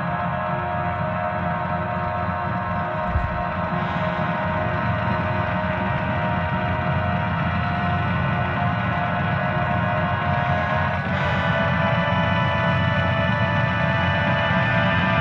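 High school marching band and front ensemble playing slow, held chords that gradually grow louder, moving to a new chord about eleven seconds in. A single low thump sounds about three seconds in.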